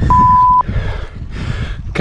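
A single high beep, about half a second long just after the start, from a cycling computer's interval alert as a five-minute interval ends. Wind rumbles on the microphone throughout.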